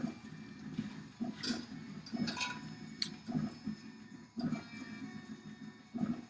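Scattered light clicks and knocks of metal tools being handled on a desk: a helping-hands clamp being adjusted and wire cutters set down, about half a dozen clicks over soft handling noise.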